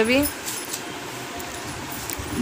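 A cloth being wiped over a refrigerator door, a low rubbing noise with a few faint light clinks.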